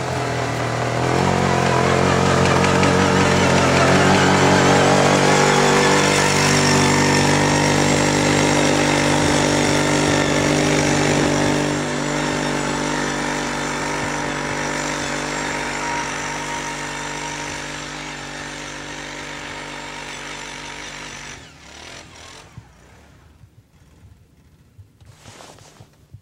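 ATV engine running at a steady pitch under load as the quad ploughs through deep snow. It is loudest a few seconds in, fades as the machine climbs away, and cuts off abruptly near the end.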